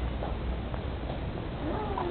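Peacock calling: a single drawn-out call begins near the end, rising quickly and then holding a long, slowly falling note. Faint footsteps sound under it.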